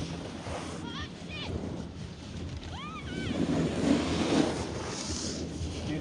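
Wind on the microphone and the hiss of snowboards sliding over snow, swelling about four seconds in, with two short high calls that rise and fall, about one and three seconds in.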